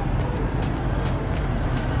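Steady city street noise: a constant traffic rumble with an even wash of noise over it.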